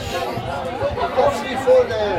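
Several spectators' voices talking and calling out at once, overlapping chatter with a louder shout near the end.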